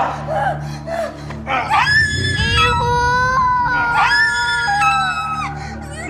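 A woman crying out and whimpering in distress, breaking into long, held screams from about two seconds in, over a steady low music drone.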